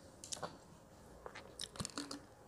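A few faint clicks and crackles as a plastic drink bottle is handled and its cap twisted open, most of them in a cluster near the end.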